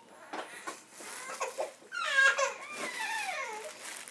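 Plastic packaging crinkling as bagged clothes are handled. About halfway through, a high-pitched voice, like a small child's, gives a long whine that falls in pitch.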